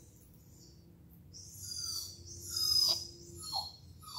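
Young border collie whining high and giving several short yips that fall in pitch, the whine building about a second in and the yips coming near the end, while it holds a sit-stay.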